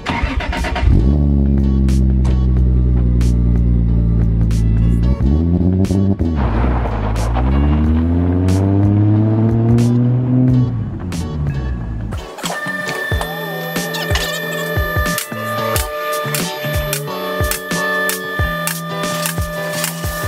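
Turbocharged 2JZ-GTE straight-six of a swapped Volvo 240 wagon running loud under throttle. Its pitch glides and dips briefly around five to six seconds in, then climbs again before it stops near eleven seconds. Background music with a steady beat plays under it and carries on alone afterwards.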